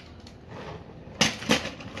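Two sharp plastic knocks about a third of a second apart, a little over a second in, as hard plastic transforming toy robots are handled and set down on a table. Before them there is faint handling noise.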